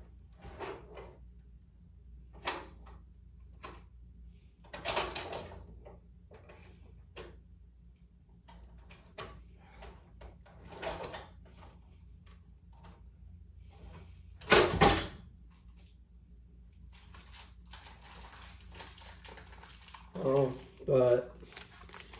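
Handling noises of a plastic candy bag being rustled and folded shut: scattered crinkles and clicks, one louder knock about two-thirds of the way in, and a longer crinkling stretch near the end. A faint low hum runs underneath, and a couple of short voice sounds come just before the end.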